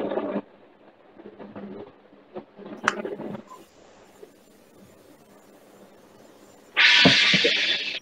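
Quiet call audio with a few faint clicks, then about a second of loud hiss-like rustling noise through a video-call microphone near the end.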